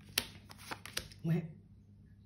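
Stiff oracle cards being laid down and slid over one another on a tabletop spread: about five sharp card taps and flicks in the first second.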